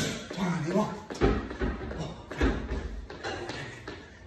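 A man's voice counting breathily, with two dull low thuds, about a second in and again around two and a half seconds, from feet landing on a wooden floor during toe hops.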